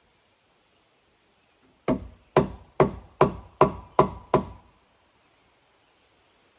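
Seven sharp blows of a hand striking tool on wood, evenly spaced at about two and a half a second, each with a brief ring.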